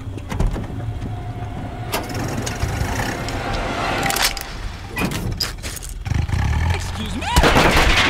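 Gunfire from an animated film's soundtrack, scattered sharp shots over the low running of a car engine, with a louder burst near the end.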